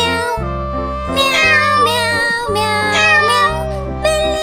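Children's song with meowing cat calls sung over the music, over a steady synth bass line that changes notes every second or two.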